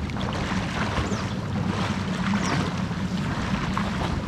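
Pool water lapping and sloshing close to the microphone, with steady wind noise on the microphone and the splashing of a swimmer's strokes.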